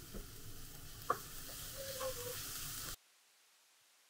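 Chopped octopus, Japanese leek and maitake mushroom sizzling in rice oil in a frying pan, with a couple of light knocks. The sizzle cuts off abruptly about three seconds in.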